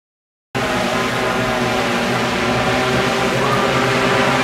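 Silence, then about half a second in a loud film-scene soundtrack cuts in abruptly: a dense, steady mix of sustained musical tones over a rumbling wash of action noise.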